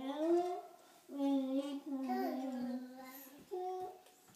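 A young boy singing into a toy microphone, holding long drawn-out notes, with a short pause about a second in.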